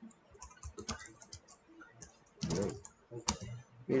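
Computer keyboard typing: an uneven run of separate key clicks as a sentence is typed, with a short vocal sound about two and a half seconds in.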